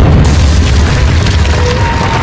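Loud, deep rumbling boom with crashing debris noise, a sound effect for a stone wall shattering and crumbling apart; a sharp crash right at the start, and the low rumble eases off near the end.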